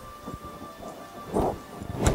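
Two short, muffled bursts of rumbling noise close on a handheld microphone, about half a second apart near the end, over a faint backing track.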